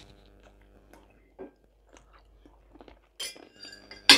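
Quiet chewing of a mouthful of buckwheat, with small soft clicks. Near the end, a knife and fork clink and scrape briefly on a china plate.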